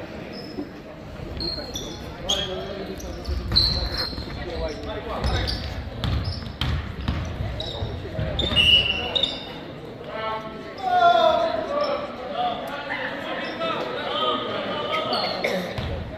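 Voices talking indistinctly in a large room, with scattered knocks and thumps.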